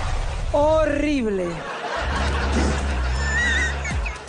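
A drawn-out voice sliding down in pitch for about a second, then laughter over a low, steady music bed as a comic song number ends.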